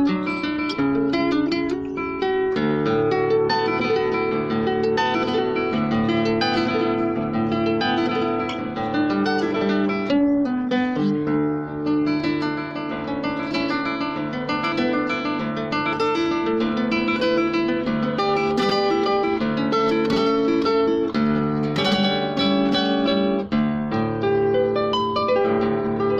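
Nylon-string classical guitar played fingerstyle: a continuous run of plucked melody notes over a bass line, without pause.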